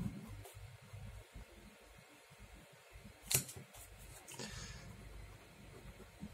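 Ballpoint pen drawing on sketchbook paper: soft rubbing of the hand on the page and a short scratchy stroke, with one sharp tick about three seconds in.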